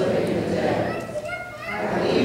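Voices speaking in a large, echoing church, with a young child's high voice calling out in a few short rising cries in the second half.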